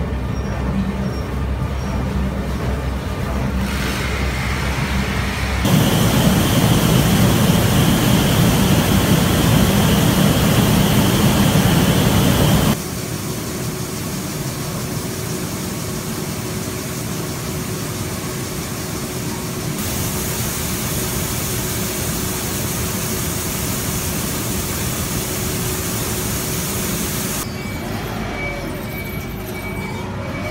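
Loud, continuous industrial machinery noise in a grain mill, in several abruptly changing stretches. The loudest stretch runs from about six to thirteen seconds. After it the noise is a quieter, steady machine hum with a held tone.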